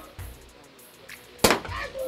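The cork of a large bottle of Moët & Chandon rosé champagne popping out once, a single sharp pop about one and a half seconds in, after a few faint clicks of the cork being worked loose.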